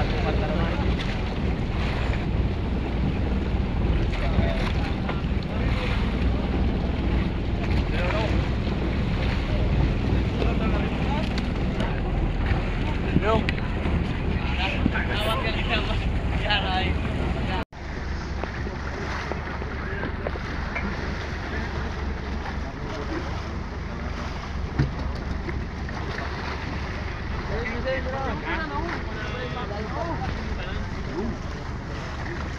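An outrigger fishing boat's engine running with a steady low drone, wind buffeting the microphone and water washing against the hull. The sound cuts out for an instant about two-thirds of the way in, then the drone resumes.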